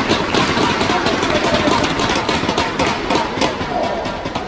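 Arena crowd clapping and cheering at the end of a badminton rally, a loud, dense clatter of claps under shouting voices.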